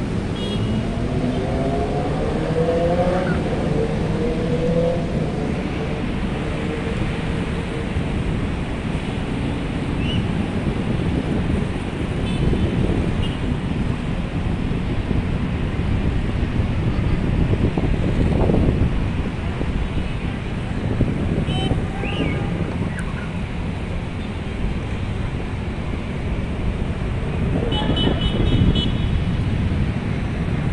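Steady road traffic noise from a busy multi-lane road, with engines rising in pitch as vehicles accelerate near the start and a few short horn toots.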